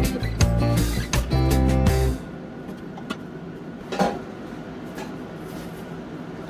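Plucked guitar music that stops about two seconds in. After it comes quieter room sound with a few light knocks and a clink of pots and pans in a kitchen drawer, the most distinct knock about four seconds in.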